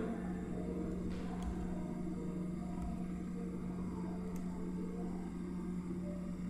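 Steady low electrical hum under faint background hiss, with a couple of faint clicks.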